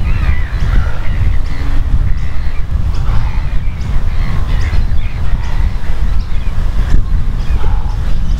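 Wind buffeting the microphone in a steady low rumble, with birds calling in the background, in wavering cries that come and go.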